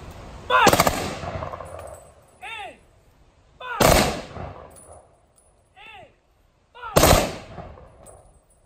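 Three-volley rifle salute fired by a ceremonial rifle squad: three loud volleys about three seconds apart, each a single crack with an echoing tail. A shouted command comes about a second before each volley.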